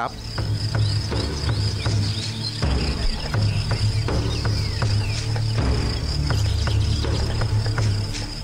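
Steady high-pitched chirring of insects over a low droning music bed, with scattered short clicks.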